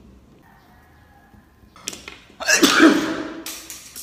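A person sneezing once, loudly, about two and a half seconds in, after a short click.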